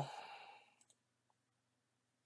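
Near silence: room tone, with the end of a spoken phrase fading out in the first half second and a faint click a little under a second in.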